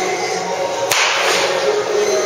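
A baseball bat hitting a pitched ball once, a single sharp hit about a second in, over background music.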